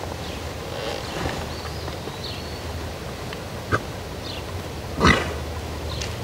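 A stressed two-year-old colt lying down with one foot tied up, breathing, with one short loud snort about five seconds in.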